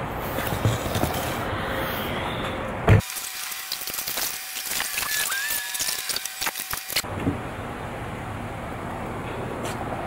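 A sharp knock, then glass bottles and jars dropped through the slot of a glass-recycling dumpster, clinking and clattering against the glass already inside for about four seconds.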